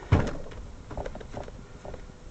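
Thuds of a lump of mixed crank and porcelain clay being wedged by hand on a wedging bench: one heavy thump just after the start, then two softer knocks about a second later.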